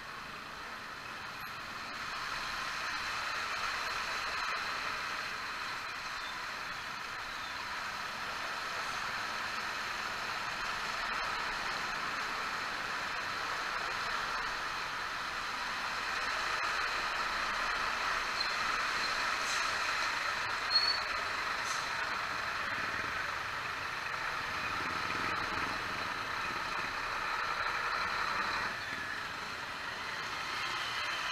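Motor scooter running slowly through flooded traffic: steady engine and road noise throughout, with one short sharp sound about two-thirds of the way in.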